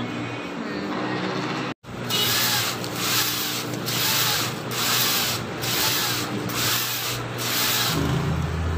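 Large sheets of printed uniform fabric rustling and swishing as they are handled and flipped. The swish repeats a little under once a second, after a brief dropout about two seconds in.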